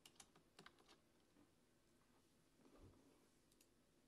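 Faint computer keyboard and mouse clicks in near silence: several quick clicks in the first second and a couple more near the end.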